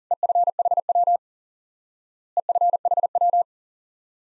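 Morse code at 40 words per minute, a single steady tone keyed in dots and dashes, spelling EFHW, the ham-radio abbreviation for end-fed half-wave antenna. The group is sent twice, each run lasting about a second with a pause of about a second between.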